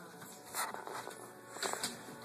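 A dog's claws scrabbling and clicking on a slippery tile floor as it tugs on a toy, with a few short scrapes about half a second in and again near the end.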